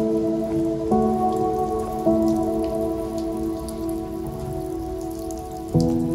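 Background music of slow, sustained chords that change every second or few, over a steady low noise.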